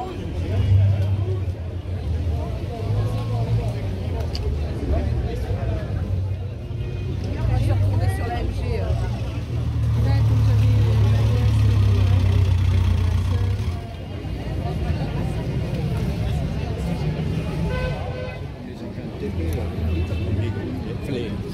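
Vintage car engine running, with a low hum that swells loudest about halfway through as a car moves slowly nearby, amid crowd chatter.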